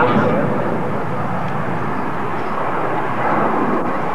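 Jet noise from an RAF Nimrod's four Rolls-Royce Spey turbofans as it flies past, a steady rushing sound.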